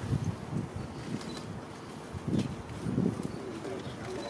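A pigeon cooing low, about five coos, the strongest two in the second half, with a few faint high chirps.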